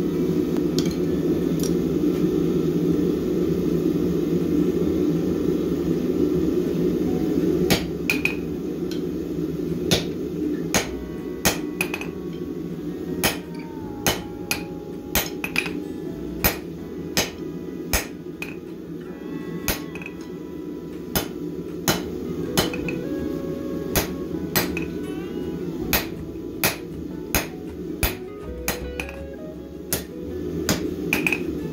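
Blacksmith's hammer striking red-hot steel bar stock on an anvil, forging a step into a tong jaw. The strikes begin about eight seconds in and keep up an uneven rhythm of roughly one to two a second, over a steady low rumble.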